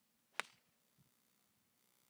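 Golf club striking a teed ball on a tee shot: one sharp click a little under half a second in.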